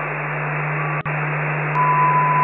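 Analog TV and VHS static: a steady, narrow-band hiss over a low hum, with a brief click-dropout about a second in and a steady high beep tone that comes in near the end.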